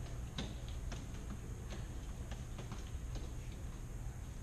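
Irregular light clicks and taps from nunchaku being swung through twirls and back-and-forth passes, over a steady low hum of fans.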